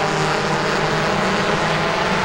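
Race-truck engines running at speed on a short oval, a steady drone with a slight wavering in pitch as the pack passes.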